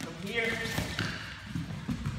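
Dull thuds and scuffs of wrestlers' bodies and feet hitting foam gym mats during a takedown, the sharpest thump near the end, with a man's voice briefly in the first second.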